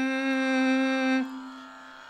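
A man singing a Tamil song solo into a microphone, holding one long steady note that trails off just over a second in.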